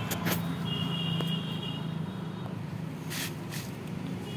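Hands handling an e-rickshaw's front-wheel speedometer cable, giving a few short clicks and knocks, mostly near the start and again about three seconds in, over a steady low hum.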